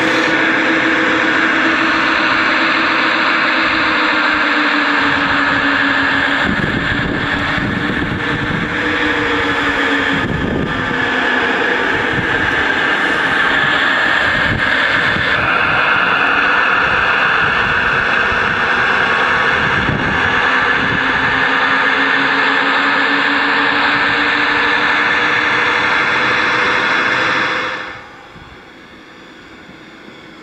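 Gauge 1 model Class 66 diesel locomotive's onboard sound system, playing a steady diesel engine running sound through a small loudspeaker. The sound drops sharply near the end.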